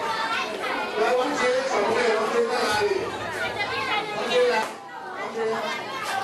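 A crowd of adults and children chattering and calling out over one another in a large hall. The noise dips briefly about five seconds in.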